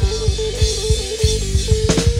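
Rock band jamming: a held, stepping guitar melody line over a steady run of bass drum and bass, with a sharp drum or cymbal hit near the end.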